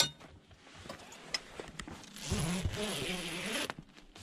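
Zipper being run along the rooftop tent's fabric seam as a zipper adapter is joined to the tent's YKK zipper, a rasping zip lasting about a second and a half, beginning past the middle. A sharp click comes right at the start.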